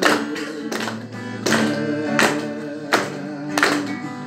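A man singing a song into a microphone while strumming an acoustic guitar, with strums about every 0.7 seconds.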